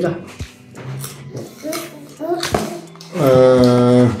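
Light clicks and knocks of small objects handled on a table, with short voice fragments; near the end a low, steady vocal sound held for almost a second is the loudest part.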